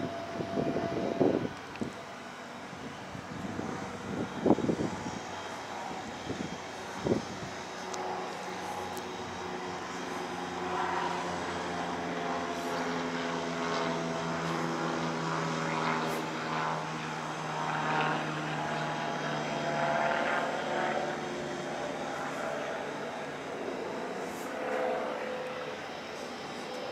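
A steady low engine drone comes in about six seconds in and cuts out around twenty seconds, with a few sharp knocks before it and faint voices in the background.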